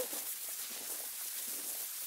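Steady surface hiss from a damaged 1942 Wilcox-Gay Recordio acetate home-recording disc being played back, heard in a pause between spoken words.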